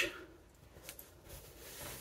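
A quiet pause with a couple of brief faint clicks just before the one-second mark, after the tail of a spoken word at the very start.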